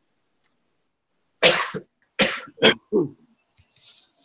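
A woman coughing into her fist: four coughs in quick succession, starting about a second and a half in.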